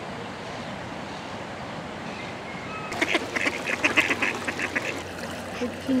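Ducks quacking in a quick run of many short, repeated calls lasting about two seconds, starting about halfway through.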